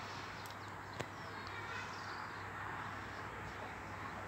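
Faint, steady outdoor ambience with a soft hiss and faint distant bird calls, and a single small click about a second in.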